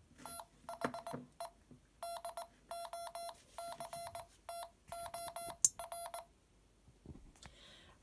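The Wand Company's Twelfth Doctor sonic screwdriver universal remote beeping out Morse code: a string of short and long beeps on one steady mid-pitched tone, stopping about six seconds in. A single sharp click comes shortly before the beeps end.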